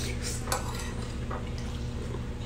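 Metal fork clinking and scraping against a plate while eating, with one light clink about half a second in.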